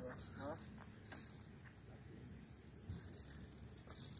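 Crickets chirping steadily, a faint high-pitched drone.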